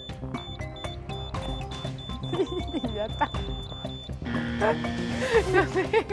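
Quiz-show countdown sound effect: a ticking clock over background music that stops about four seconds in as time runs out, followed by a short buzzer. A woman's voice is heard briefly in between.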